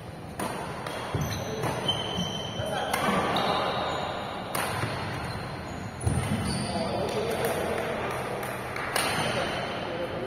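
Badminton rackets striking a shuttlecock in a doubles rally: sharp knocks at irregular intervals, the clearest about 3, 4.5, 6 and 9 seconds in. Short high squeaks of court shoes on the floor come between them.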